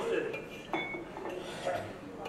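Soundtrack of an animated film clip played over a lecture hall's speakers: light clinking sounds and a voice, with a brief high ring about a second in.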